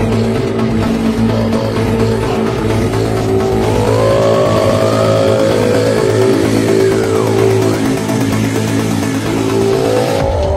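Car engines revving and rushing past in a chase, mixed with an electronic dance music track that plays steadily throughout. Engine pitch rises and falls in the middle of the stretch.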